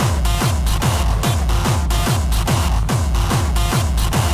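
Hardstyle dance track at about 140 beats a minute: a heavy distorted kick drum on every beat, each kick falling in pitch, under higher synth and percussion, with no vocals.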